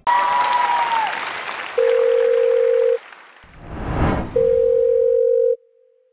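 Studio audience cheering and clapping, followed by two long steady electronic beeps of about a second each, with a whooshing swell between them.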